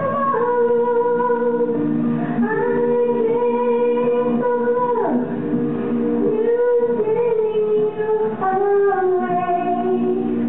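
A slow song sung by a single voice over instrumental accompaniment, the voice holding long notes and sliding between them.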